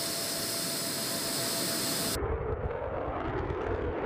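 Jet engines of a Sukhoi Su-34 running on the ground: a steady, loud hiss with a faint steady whine. A little over halfway through it cuts abruptly to a lower, rougher rumble.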